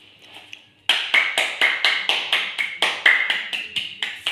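A child clapping her hands in a quick steady run, about four claps a second, starting about a second in.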